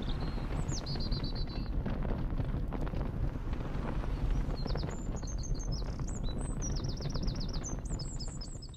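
Outdoor ambience: a steady low rumble with small birds chirping over it, a quick trill about a second in and a busy run of chirps and trills through the second half.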